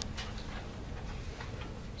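Faint, scattered ticks and taps of a dry-erase marker on a whiteboard over a low steady room hum.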